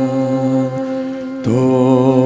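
Slow, wordless chant-like singing: one long held low note, then a step to a new note with a slight waver about one and a half seconds in.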